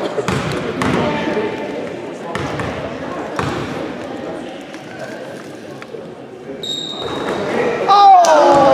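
Basketball bounced on a hardwood gym floor, a sharp thud about once a second, in a large echoing hall with spectators talking. A brief high-pitched tone sounds about a second before the end.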